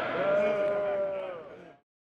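A group of voices holding one long shouted cheer, which fades out about a second and a half in and then stops.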